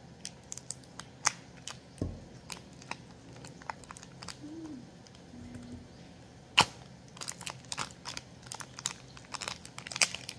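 Plastic Oreo biscuit packet crinkling and tearing as it is peeled by hand off a frozen popsicle, in scattered crackles with one sharp snap about six and a half seconds in and quicker crinkling near the end.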